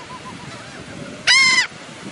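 Laughing gull giving one loud, arching call about a second and a half in, with fainter gull calls before it.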